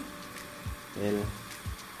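Hot frying oil sizzling softly in a pot, with fries just lifted out of it on a slotted skimmer.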